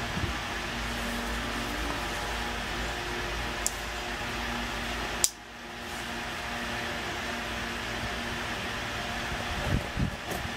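A steady machine hum with a faint low tone underneath, like a fan running. About five seconds in there is a sharp click, followed by a brief dip in the hum.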